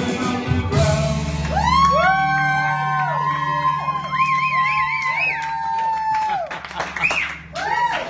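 Karaoke: a woman singing long held notes, one with a wavering vibrato, over a pop-rock backing track played through a PA speaker. A short rising-and-falling vocal cry is heard near the end.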